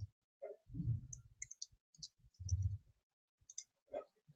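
Faint computer mouse clicks, several scattered short ticks, as the presenter clicks through a web app's settings, with two brief low sounds in between.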